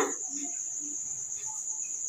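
Crickets trilling steadily at a high pitch in the background.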